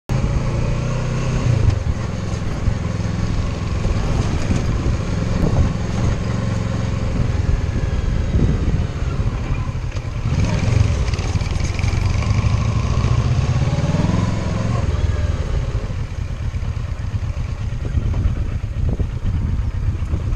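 Kawasaki Versys 650's parallel-twin engine running under changing throttle while riding a dirt trail, the revs rising and falling several times, over a steady noise of the ride.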